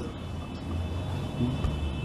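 Steady low rumble of background room noise, with faint steady high-pitched tones above it.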